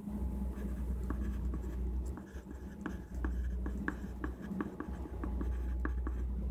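Pen writing on a notebook page: a quick, irregular run of short scratching strokes, over a low steady hum.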